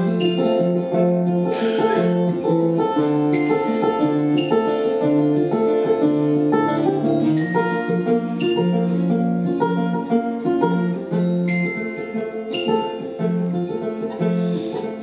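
Banjo and acoustic guitar playing an instrumental passage together, with a dense run of plucked notes.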